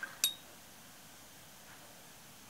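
A single light clink about a quarter-second in, with a brief high ringing tone after it, like a small hard object tapping glass.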